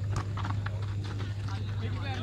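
Football kicked on a dirt pitch: a sharp knock just after the start, followed by a few shorter knocks, over voices from the crowd and a steady low hum.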